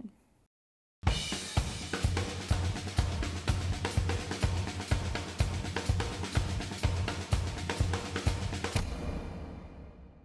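Drum kit playing a busy beat with bass drum, snare, hi-hat and cymbals. It starts sharply after a brief silence about a second in and fades out near the end.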